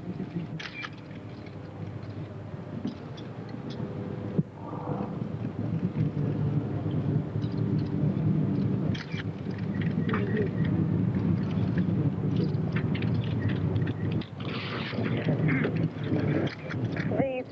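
Outdoor ambience outside a cathedral: a steady low rumble with faint scattered sounds from a waiting crowd of onlookers, growing a little louder about four seconds in.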